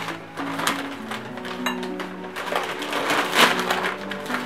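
Gift wrapping paper rustling and tearing in repeated crinkly bursts as a present is ripped open by hand, with background music playing underneath.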